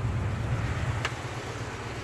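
2017 Ford F-250 Super Duty's 6.2-litre gasoline V8 idling with a steady low hum. A faint click about a second in.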